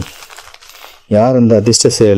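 Faint rustle and clicking of a saree being handled in its plastic wrapping, then a man's voice starting about halfway through and speaking to the end.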